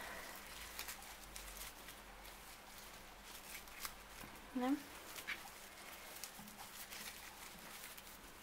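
Faint rustling with scattered light crinkly ticks of paper yarn being worked with a large crochet hook, pulled and looped through stitches.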